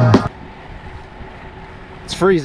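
Background music that cuts off abruptly about a quarter of a second in, followed by a steady rush of wind on the microphone and road noise from a road bike in motion.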